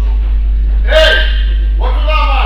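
A steady low electrical hum, with a short, loud vocal exclamation about a second in, like a shout or grunt, and another voice starting near the end.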